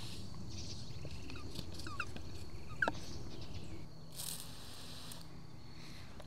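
A plastic hand-pump garden sprayer being fitted and handled, giving a few small clicks, with a brief hiss about four seconds in. Under it is a quiet outdoor background with a few faint short chirps.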